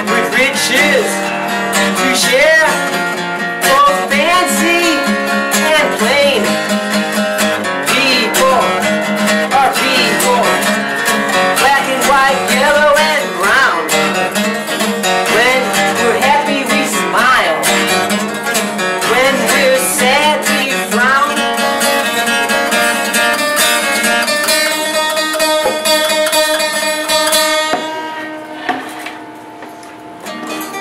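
A man singing to his own strummed acoustic guitar. About two-thirds of the way through the voice stops and the guitar plays on alone, growing quieter near the end.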